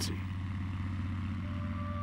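Steady, fast-pulsing drone of an early propeller biplane's piston engine running.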